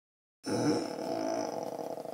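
A woman's long, drawn-out groaning yawn as she stretches on waking, starting about half a second in and held steadily.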